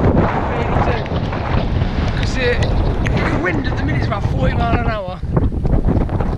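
Strong wind buffeting the microphone: a heavy, steady low rumble.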